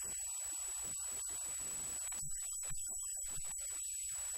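Faint steady electrical mains hum and hiss with a thin high-pitched whine, and a few small clicks between about two and three and a half seconds in.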